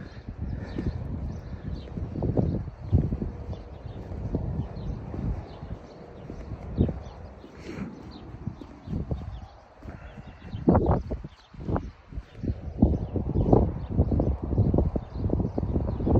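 Footsteps on a concrete pier, with wind rumbling on the microphone.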